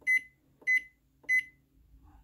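Zojirushi NP-HCC10 rice cooker beeping three times, a short high beep a little over half a second apart. Each beep answers a press of its Menu button as the cooking setting steps from Regular down to Quick.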